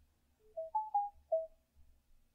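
A quiet electronic chime: five short single-pitched beeps in quick succession, stepping up in pitch and then back down, like a phone notification tone.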